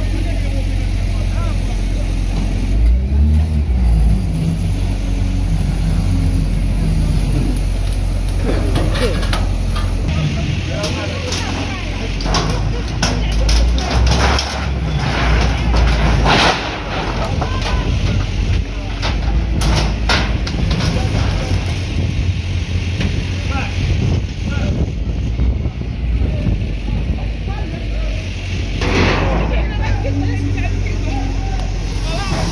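Diesel engine of a Hyundai wheel loader running under load, revving up about three seconds in. Its bucket bashes through a metal grille enclosure and wooden structures, with repeated crashes, clanks and scraping of metal and wood through the middle stretch and again near the end.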